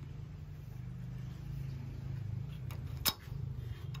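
A low, steady mechanical hum, with a single sharp click about three seconds in.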